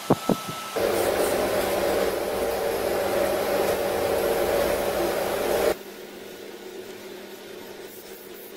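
A few quick clicks, then the steady whir of an electric fan or blower with a low hum, running about five seconds before it drops off suddenly to a quieter steady hiss.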